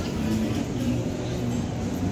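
Steady city street traffic noise, with a vehicle engine running.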